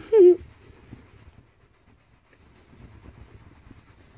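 A short laugh, then a fluffy towel rubbed vigorously over a head of hair to towel off lathered waterless shampoo: a faint, rough rustling that grows a little stronger near the end.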